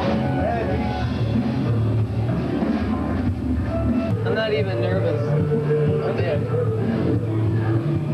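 Rock music playing, with held bass notes, and voices over it.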